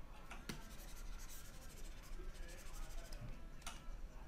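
A stylus quietly scratching on a graphics tablet's drawing surface, with a sharp tap about half a second in and another near the end.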